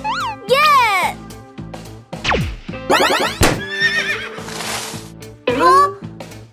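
Cartoon sound effects and wordless character cries over background music: a few quick arched pitch swoops in the first second, a falling glide about two seconds in, a fast rising sweep about three seconds in, a hissing burst, and another swooping cry near the end.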